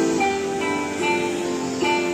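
Plucked-string instrumental music playing from a TCL 32S65A Android TV's built-in speakers, as a demonstration of the TV's sound quality.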